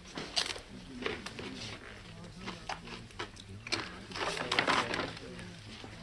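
A chip crunching as a man bites and chews it, in several crisp cracks with a thick run of them about four to five seconds in, over a low murmur of party conversation.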